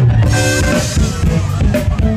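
Live band playing funk through stage speakers, the drum kit and bass loudest, with a deep bass note held at the start.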